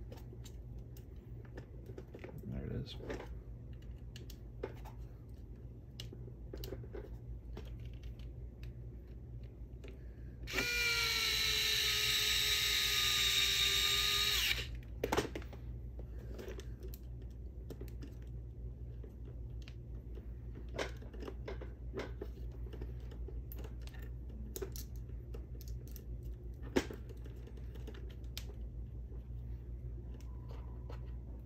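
Small cordless electric screwdriver running for about four seconds near the middle, a steady whine that sags slightly in pitch as it drives in a small link bolt. Light clicks of small plastic and metal parts being handled come before and after.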